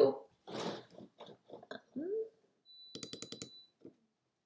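Soft mumbling and breathy mouth sounds, then a quick run of about eight sharp clicks near the end with a thin high whine under them.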